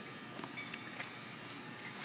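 Faint room tone with a few light clicks about half a second to a second in: footsteps on a concrete floor.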